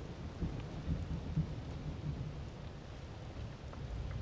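Steady rain with a low, continuous rumble of thunder.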